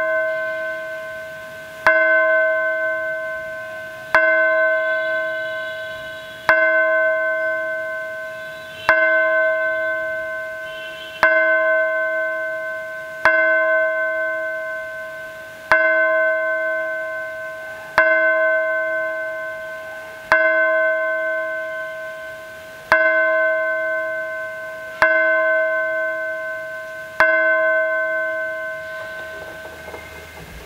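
A single bell struck slowly and evenly, about once every two seconds, each stroke ringing and fading before the next, a dozen strokes in all. It is rung while the priest blesses the people with the monstrance at Benediction of the Blessed Sacrament.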